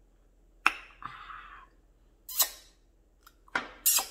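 Mouth sounds of drinking ginger ale through a straw: a sharp lip smack followed by a short hissy sip, a second louder smack, and a quick cluster of breathy smacks near the end.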